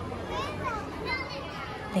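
A crowd of young children chattering, their high voices rising and falling over general crowd noise.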